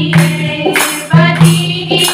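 A group of women singing a Hindu devotional kirtan in unison, with rhythmic hand-clapping keeping the beat about three claps a second.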